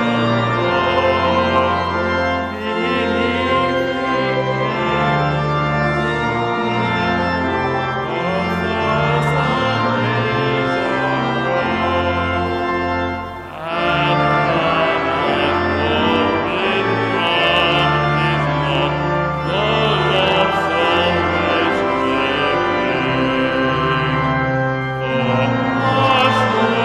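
Pipe organ accompanying a choir singing a carol: held organ chords over a moving bass line, with the voices on top. There is a short break about halfway through, between lines, before the organ and voices go on.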